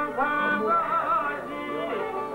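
Albanian folk song: a man singing a held, ornamented melody that slides and wavers between notes, over a plucked çifteli.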